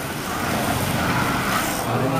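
1/32-scale vintage slot cars racing on a multi-lane track, their small electric motors running steadily.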